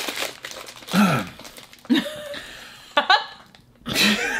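Plastic snack wrapper crinkling as it is handled, broken by three short vocal sounds about a second apart.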